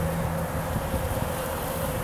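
Honeybees buzzing as they fly around a dry pollen feeder. A close bee's low hum drops away about half a second in.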